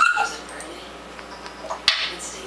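African grey parrot chattering: a short whistled note right at the start and a brief lower note just after, then a sharp click-like sound near the end.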